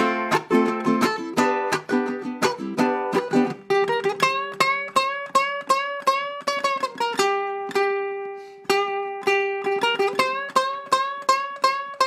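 Ukulele played fast: a quick run of plucked notes, then rapid repeated picking on the E string with the note bent up a whole step and let back down, twice, with a held note in between. It is a bluesy string-bend riff.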